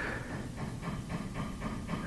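Faint, steady low rumble of room background noise in a pause between spoken phrases.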